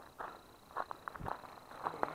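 Faint footsteps on a gravel road, a few irregular steps about half a second apart.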